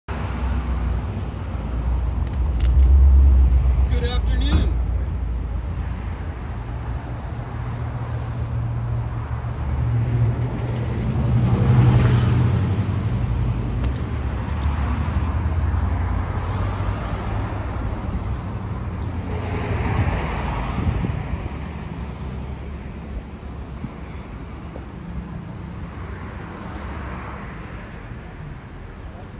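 Traffic and vehicle engines making a steady low rumble, with indistinct voices now and then.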